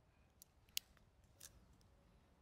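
Three short, faint clicks of a blackthorn thorn scraped and tapped against a stone surface. The middle click is the sharpest.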